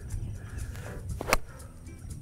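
Golf iron striking a ball off the tee on a full swing: one sharp crack about a second and a third in, over a low steady rumble.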